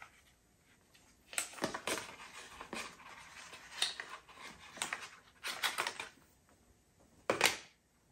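Packaging crinkling and rustling as a braided charging cable is unwrapped: a string of short, irregular, scratchy crackles, the loudest one near the end.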